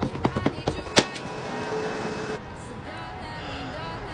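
A few sharp taps and clicks, the loudest about a second in, then a faint steady rush.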